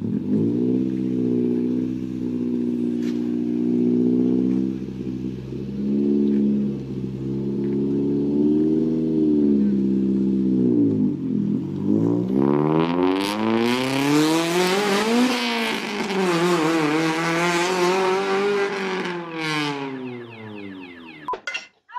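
Lowered Honda Civic hatchback's four-cylinder engine running at low revs for the first eleven seconds, then revved hard in two rising pulls, the second easing off, with a much louder, noisier exhaust note; it fades near the end as the car drives off.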